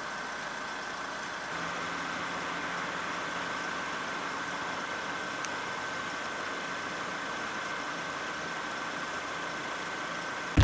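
A vehicle engine idling steadily, with a constant high-pitched tone running over it.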